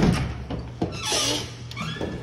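A glazed French door opening: a sharp latch click at the start, then short squeaks as the door swings on its hinges.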